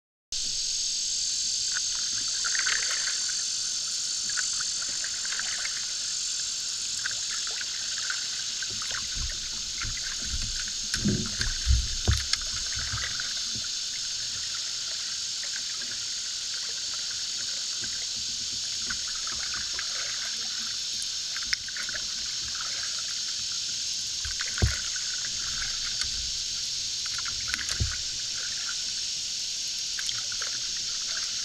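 A wooden cedar canoe being paddled on a calm river: soft water sounds from the paddle strokes over a steady high hiss. There are a few dull knocks on the hull, several together about a third of the way in and single ones later on.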